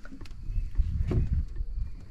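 Low, uneven rumble of wind and water around a small boat, with a couple of faint clicks near the start.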